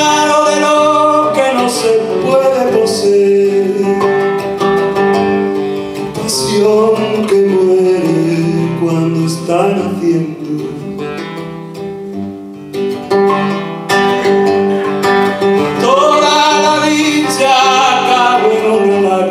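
A man singing a slow song into a microphone, with long held notes, accompanying himself on a classical guitar.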